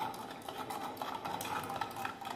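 Copper sulphate solution being stirred in a copper vessel to dissolve the crystals in water: light, irregular scraping and clinking against the metal.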